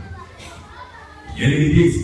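A man speaking through a microphone in a large hall, coming in loudly about one and a half seconds in, after a quieter stretch that holds only faint voices from the room.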